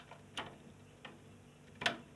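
A few small clicks, the loudest near the end, of a screwdriver tip working the plastic DIP switch bank on a gas boiler's control board as switch 1 is flipped on.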